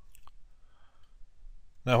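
Two faint short clicks shortly after the start, then a quiet pause with low room tone, and speech begins near the end.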